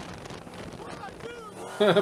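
Dodge Challenger Hellcat driving past: an even rush of car and road noise without a clear engine note. A man starts laughing near the end.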